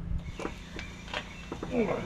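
Scattered light clicks and knocks from hand work on the front steering linkage under a pickup truck, with a short voice sound near the end.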